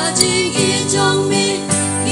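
Women's voices singing a Khasi hymn (jingrwai) with vibrato on held notes, over steady instrumental accompaniment.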